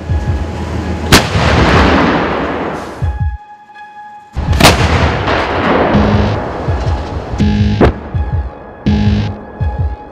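152 mm DANA wheeled self-propelled gun-howitzer firing: two sharp muzzle blasts about three and a half seconds apart, each followed by a long rolling echo. Music with a throbbing beat comes in underneath over the second half.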